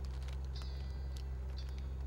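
A boat motor runs with a steady low hum. Short high chirps come about once a second over it.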